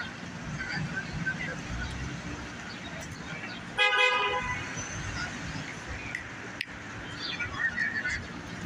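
A car horn gives one short honk about four seconds in, over the steady noise of city street traffic.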